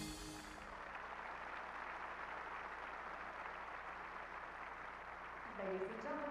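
The last note of the skating music dies away, then an arena audience applauds steadily. A voice begins near the end.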